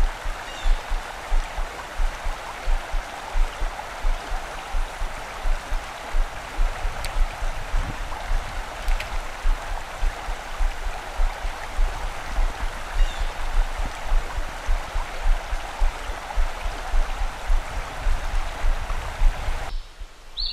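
Steady rush of a mountain stream's flowing water, with frequent irregular low bumps on the microphone.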